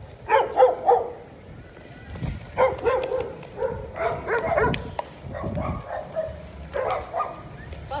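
Several short shouted calls from voices out in the street, coming in clusters of quick bursts with pauses between them.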